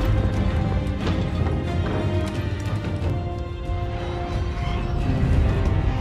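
Dramatic film score with long held notes over a deep rumble, with a few sharp hits in the mix.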